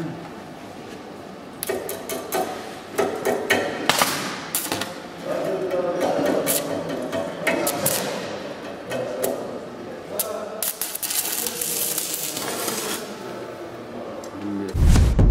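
Electric arc welding on a steel tractor frame: the arc crackles in irregular bursts among sharp metal knocks, with the longest and densest crackling stretch near the end.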